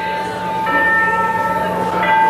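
Live rock band music carried by a long steady high held note, with more held notes joining above it about two-thirds of a second in.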